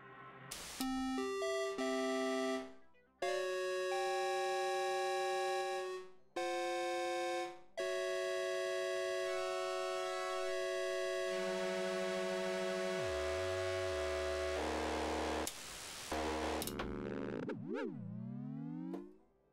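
Four-voice polyphonic synthesizer patched on an Axoloti board, playing single notes that step in pitch, then held chords with short breaks between them. Near the end the pitch swoops sharply down and back up.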